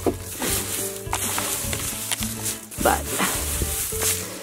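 Dry straw rustling and crackling as it is spread and fluffed by hand for bedding, over background music.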